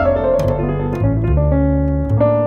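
Grand piano and upright double bass playing a jazz duo piece together. The bass holds low notes, each lasting about half a second, beneath shorter piano notes and chords that change several times a second.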